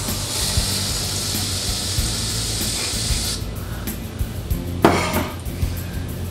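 Aerosol can of whipped cream spraying with a steady hiss for about three seconds, then cutting off, over background music.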